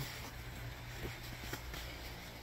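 Faint, quiet handling noise: a few soft knocks and shuffles from a box of plant trays being carried by hand. A low steady hum sits underneath.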